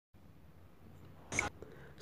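Very quiet background with one brief soft puff of hiss-like noise about two-thirds of the way through.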